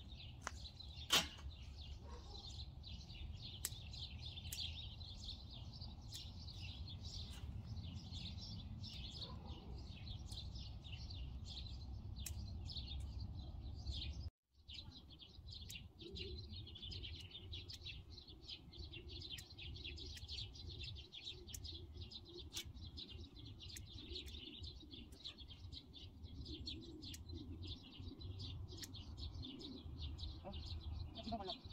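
Small birds chirping continuously, many overlapping quick chirps, over a faint low outdoor rumble. A single sharp click about a second in, and the sound cuts out for a moment midway.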